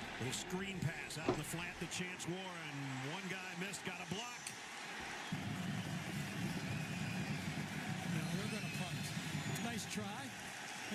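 Football game broadcast playing quietly: a commentator talking, then from about five seconds in a steady stadium crowd noise.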